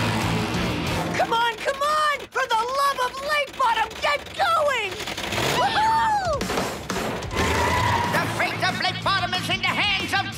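Cartoon soundtrack: background music under race-car sound effects and excited wordless vocal sounds. The vocal sounds come as many short rising-and-falling cries, with one long swooping cry about six seconds in.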